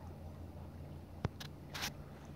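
Kayak paddle working calm water: two short splashes of the blade with dripping, and a single sharp knock about a second in, over a low steady hum.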